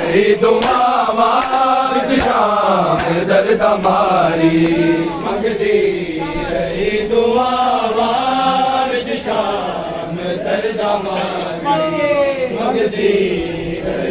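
Men's voices chanting a Punjabi noha (Shia mourning lament) together, long held notes that waver and glide in pitch without a break.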